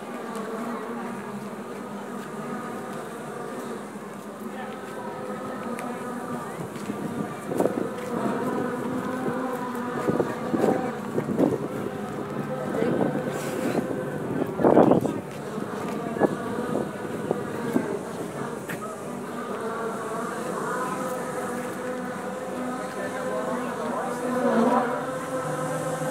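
Steady buzzing drone of a motor, holding several even tones, with scattered knocks and louder bursts from about a third of the way in to past the middle.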